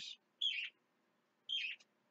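Two short, high bird chirps about a second apart, faint.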